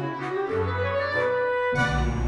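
Instrumental background music of held melodic notes over a bass line; a fuller, heavier passage comes in near the end.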